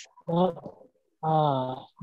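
A person's voice over a video call, two short vocal calls: a brief one, then a longer drawn-out one near the end.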